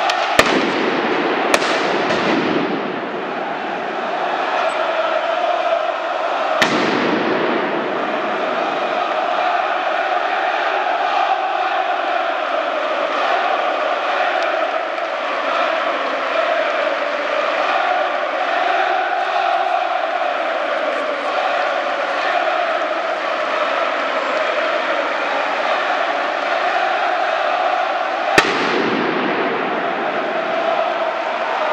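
A large stadium crowd singing and chanting, with four sharp firecracker bangs that echo off: two in the first two seconds, one about six and a half seconds in, and one near the end.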